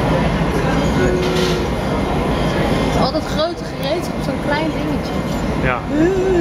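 Gas-fired glory hole (a glassblower's reheating furnace) running with a steady, loud rush of burner noise while a gather of glass on a blowpipe is reheated in its opening.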